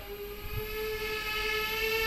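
Small twin-rotor RC bicopter's electric motors and propellers whirring in a steady tone as it descends low to land, growing slightly louder toward the end.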